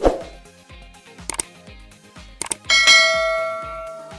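Subscribe-button animation sound effects over background electronic music with a steady beat: a hit at the start, two quick double clicks, then a loud bell ding near the end that rings out for more than a second.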